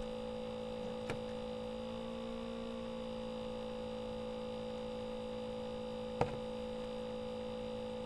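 Steady electrical hum holding two steady tones, one low and one a little higher, with a faint click about a second in and a sharper click about six seconds in.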